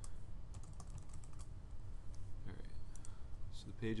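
Typing on a computer keyboard: a quick run of keystrokes in the first second and a half, then a few scattered clicks later on.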